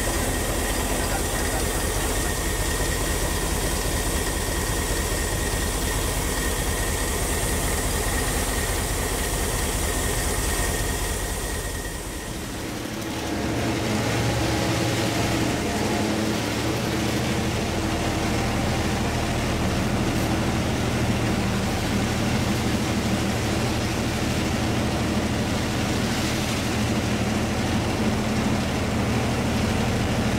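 Cab noise of a Sri Lanka Railways Class M2 (EMD G12) diesel-electric locomotive under way: its two-stroke EMD 567 diesel running steadily, with rail noise. About twelve seconds in the sound dips briefly, and then a deeper, steadier engine hum with distinct low notes comes through.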